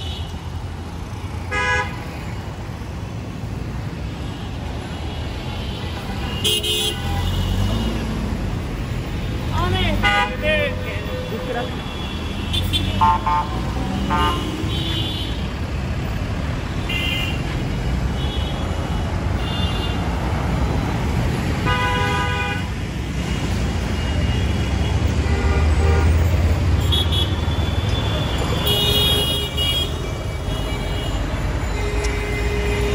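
Busy city road traffic: engines running steadily, with many short horn honks from the passing vehicles. The engine rumble swells louder a few seconds before the end as a heavy vehicle passes.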